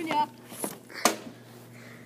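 Backyard hockey wrist shot: an ice hockey stick strikes a puck off a plastic shooting pad with a sharp crack, followed about half a second later by a second, louder crack.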